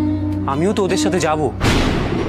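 Dramatic TV-serial background score: a steady low drone under a wavering melodic line, then a sudden loud boom sound-effect hit about one and a half seconds in, with a long ringing tail.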